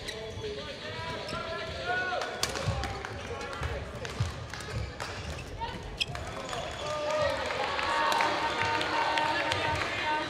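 Badminton rally: rackets hitting the shuttlecock in sharp cracks, and court shoes squeaking on the floor as the players move.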